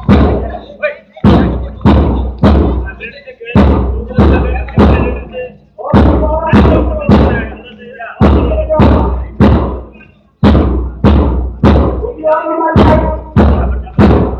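Loud drum beats with a deep low thud, keeping a marching rhythm of about two beats a second, mostly in runs of three with short pauses. A voice is heard between the beats.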